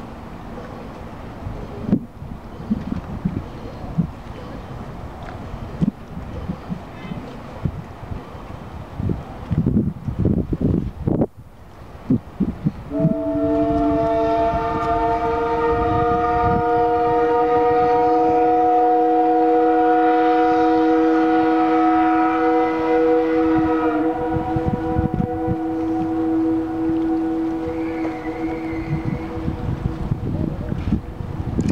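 Steam whistle of the Minne Ha Ha paddlewheel steamboat sounding one long chime blast of several notes at once. It starts about 13 seconds in with a slight rise in pitch and is held for over ten seconds, then the higher notes drop away and the lower ones trail off in a good echo. Before the blast there is low rumbling and knocking.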